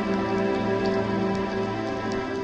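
Background music with sustained, layered tones, over a light patter of soft clicks.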